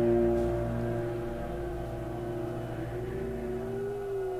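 Eerie sustained music drone: a chord of steady held tones that slowly fades, with one tone bending slightly up and back near the end.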